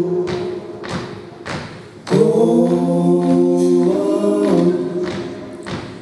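Several male voices sing wordless, sustained harmony chords in a cappella style. One chord fades out, a new full chord comes in about two seconds in, shifts partway through and fades near the end. A few soft knocks sound beneath the voices.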